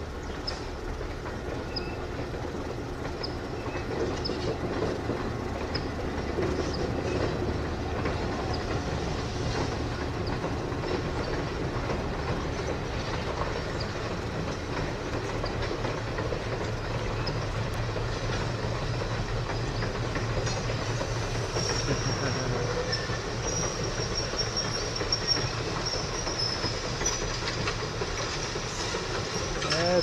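Excursion passenger train rolling across an elevated trestle bridge: a steady rumble and clatter of the cars' wheels on the rails. A thin, high, steady whine joins in during the second half.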